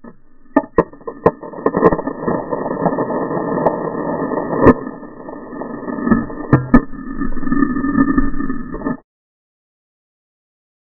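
Skis scraping and chattering over snow, picked up muffled by a GoPro, with a run of sharp knocks in the first couple of seconds and again past the middle. The sound cuts off suddenly about nine seconds in.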